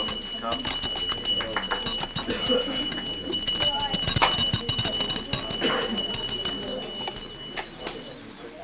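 A bell ringing steadily with rapid strikes, stopping shortly before the end, over a murmur of voices.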